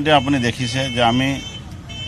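Speech: a man talking into a handheld microphone in an interview, with a short pause near the end.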